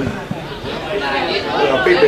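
Indistinct chatter of several people talking at once near the microphone, quieter than the clear voice just before.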